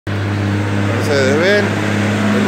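Mercedes-Benz grain truck's diesel engine running at low speed as the truck and trailer approach, a steady low hum.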